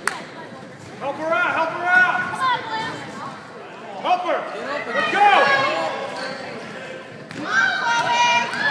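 Basketball game in a gym: a ball bounces once on the wooden court. Then come bursts of overlapping high-pitched shouts from the players and spectators, echoing in the hall.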